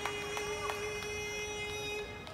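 A sumo yobidashi's drawn-out sung call of a wrestler's name, held on one long steady note. A few sharp clicks sound in the first second.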